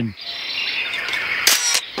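Cartoon sound effect of a large eggshell cracking: one sharp crack about one and a half seconds in, over a faint high chirping background.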